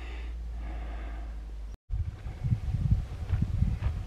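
Outdoor ambience with no speech: a steady low hum, a sudden cut about two seconds in, then irregular low rumbling of wind buffeting the camera microphone.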